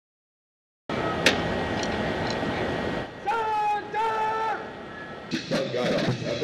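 A steady outdoor rush of noise, then a drill instructor's command drawn out in two long, held notes. Near the end a marching band comes in with drum strokes.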